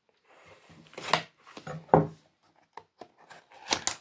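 Small cardboard box being slit open at its taped seal with a flat metal tool: paper and cardboard scraping and rustling, with a few sharp taps and knocks, the loudest about two seconds in and two more near the end.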